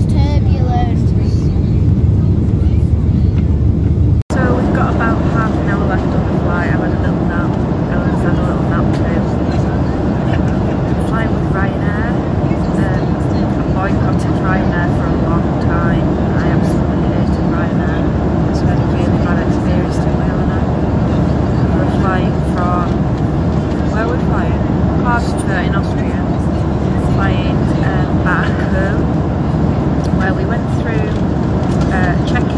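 Steady engine and airflow noise inside the cabin of a Ryanair Boeing 737 in flight, loud and low, with a woman talking over it. There is a brief dropout about four seconds in, and the rumble is heavier before it.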